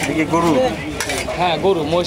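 A metal bowl clinking and scraping against a large metal cooking pot as meat curry is scooped out, with a sharp clink near the start and another about a second in, over people talking.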